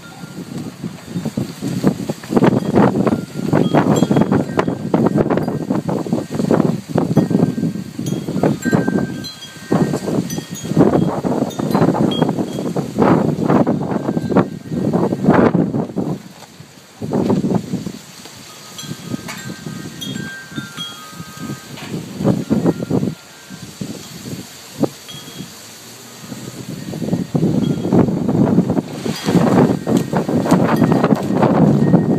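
Strong gusty wind buffeting the microphone and shaking the fabric canopy, in loud surges a few seconds apart. It calms from about halfway and the gusts return near the end. Short high ringing tones sound now and then through the wind.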